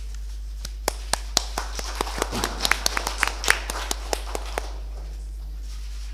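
Brief, scattered applause from a small audience: a few single claps, a denser patch of clapping, then a few last claps dying away, over a steady low electrical hum.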